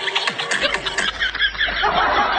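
Background music with a beat, giving way about halfway through to a quick run of high-pitched laughter.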